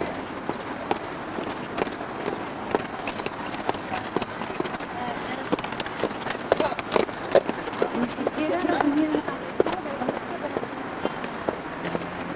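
Indistinct voices of a group outdoors, with many short scattered clicks and taps of footsteps on a paved path.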